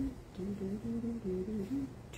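A woman humming a short tune of about six notes, a second and a half long.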